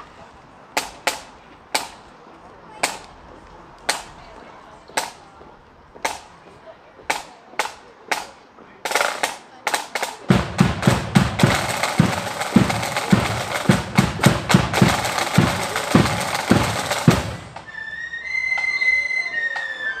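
Flute band striking up: sharp drum-stick taps about once a second that quicken, then a loud snare drum roll with bass drum beats for about seven seconds, and flutes come in on high held notes near the end.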